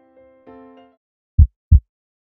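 Soft sustained musical notes fade out in the first second. About a second and a half in comes a heartbeat sound effect: a pair of deep thuds, lub-dub, about a third of a second apart.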